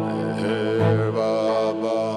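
Devotional chant set to music: a melodic line wavers and glides over a steady, held low drone.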